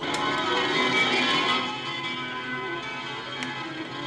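Music playing back from a Soviet reel-to-reel tape recorder, starting abruptly the moment its play button is pressed.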